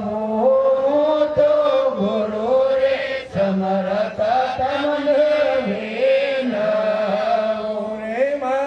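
A man's voice singing a slow devotional chant into a microphone, holding long notes that slide gently between pitches, with short breaths between phrases.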